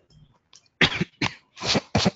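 A person coughing, a quick run of several coughs starting a little under a second in.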